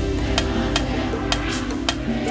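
Live band music in a stripped-down break without vocals: a held low chord with sharp percussion clicks about three times a second.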